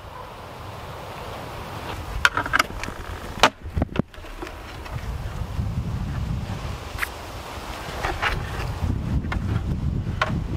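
Honeybees buzzing around a hive, with wind rumbling on the microphone. Several sharp knocks and clicks, loudest about two to three and a half seconds in and again later, come from the wooden hive's outer cover being handled and lifted off.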